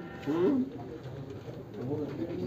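A single short, low coo of a pigeon, rising then falling in pitch about half a second in, over a faint steady room hum.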